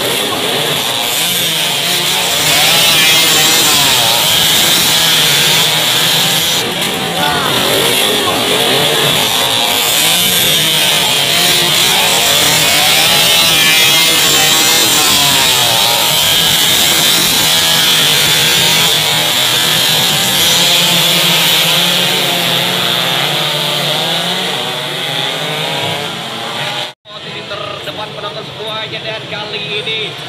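A pack of two-stroke underbone racing motorcycles revving hard together, many engines buzzing and rising and falling in pitch at once. Near the end the sound cuts out for an instant and comes back a little thinner.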